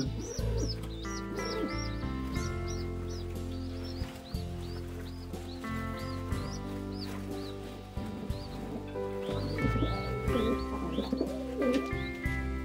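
Pigeon squabs peeping in short high chirps, about two a second, as a parent feeds them: begging calls at feeding time. Soft background music plays under them.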